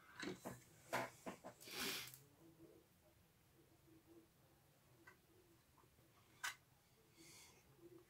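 Mostly near silence, broken by handling noise from a small 3D-printed plastic motor frame held in the hand: a cluster of sharp clicks and knocks with a short rustle in the first two seconds, and one more sharp click about six and a half seconds in.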